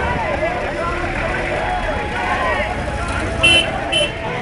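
A large crowd talking and shouting over one another, with a low rumble on the microphone. A brief loud, high-pitched sound cuts through about three and a half seconds in.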